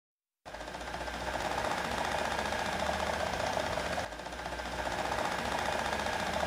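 Model train running on its track: a steady, rapid mechanical clatter that starts about half a second in.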